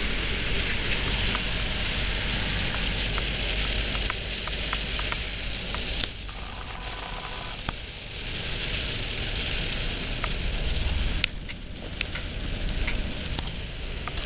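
Heavy rain pelting the car's roof and windscreen, heard from inside the car as a dense, steady hiss with scattered sharp ticks of drops, over a low rumble from the moving car.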